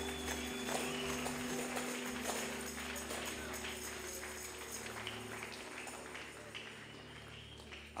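Electronic keyboard holding soft sustained chords that slowly fade, with scattered faint taps or claps underneath.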